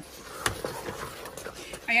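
Wooden spoon stirring a thick shredded-chicken filling in an electric cooker's pot: soft, irregular scraping, with a short click about half a second in.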